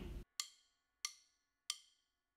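Wooden drumsticks clicked together three times at an even medium tempo, about two-thirds of a second apart: a count-in before a drum fill.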